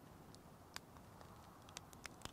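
Near silence with a few faint, sharp clicks: fishing pliers picking at a blue crab's shell.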